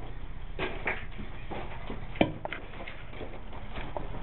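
A few knocks and clunks, the sharpest about two seconds in, as a ripped-out wall-hung porcelain sink is handled and carried off, over a low steady hum.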